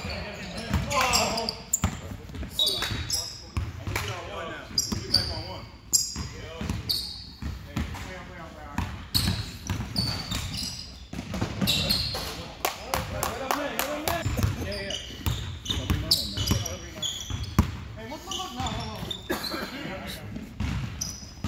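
Basketball bouncing on a hardwood gym floor, in repeated thuds, with short high sneaker squeaks and players' voices in the background.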